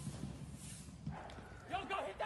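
Rough street commotion, then from about a second in a quick run of short, high-pitched yelps.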